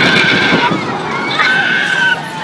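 Two held, high-pitched screams from riders on a pendulum thrill ride, each under a second, one at the start and one about halfway through, over the rush of wind on the microphone.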